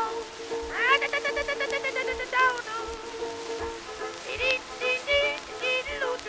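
Instrumental break of a 1920s dance-band recording: a wavering lead melody with quick repeated notes over a long held chord, and a soft low beat about twice a second.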